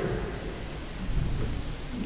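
Room tone of a large hall: a steady low rumble with hiss, no distinct events.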